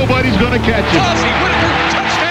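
Television football play-by-play announcer's voice calling a run as it breaks open, with other sound beneath it.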